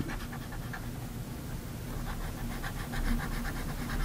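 Faint, rapid scratching of a stylus on a pen tablet, several short strokes a second, as a brush mask is painted in by hand.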